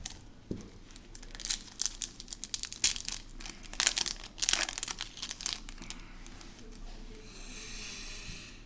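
Foil Yu-Gi-Oh booster pack wrapper being crinkled and torn open by hand: a dense run of crackles, busiest around the middle, easing into a softer rustle after about six seconds.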